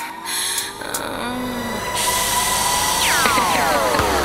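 Beatless breakdown of a tech-house club track: steady high synth tones, with a hiss of noise coming in about halfway and two falling pitch sweeps near the end.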